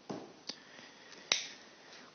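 A pen on a wall-mounted writing board: faint writing strokes and two sharp taps of the tip on the surface, the second and louder one about a second and a half in.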